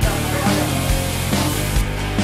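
Rock background music with guitar and a steady drum beat.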